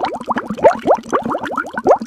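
Bubbling sound effect: a rapid stream of short, rising bubble blips, about seven a second.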